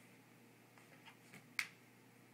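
A few faint taps, then one sharp click about a second and a half in, as a small metal lipstick tube is handled at a wooden drawer.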